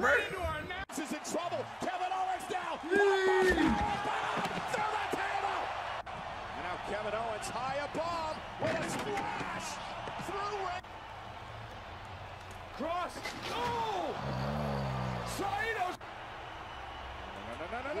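Pro-wrestling broadcast audio: commentators' voices over an arena crowd, with several heavy slams of wrestlers crashing onto and through announce tables. The sound changes abruptly a few times as one short clip cuts to the next.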